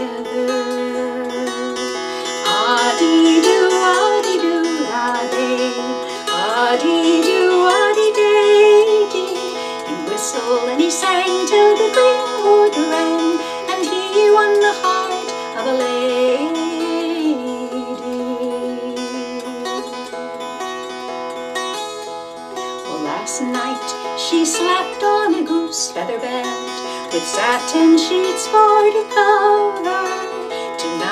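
Appalachian mountain dulcimer strummed, a folk melody picked out on the melody string over steady drone strings, with notes that slide between pitches.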